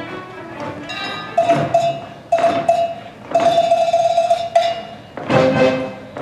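Live pit orchestra playing dance music: a few short, accented notes on the same pitch with percussion hits, then a held note, then fuller chords near the end.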